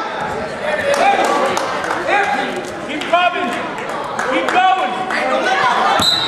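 Coaches and spectators shouting encouragement at wrestlers mid-bout, several voices calling out one after another almost without a break, with a few short knocks.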